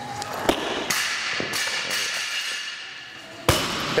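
Loaded barbell with bumper plates dropped from overhead onto a rubber gym floor: a heavy thud about three and a half seconds in, the loudest sound, with a smaller bounce just after. Two sharper knocks come in the first second, as the jerk is driven and the feet land.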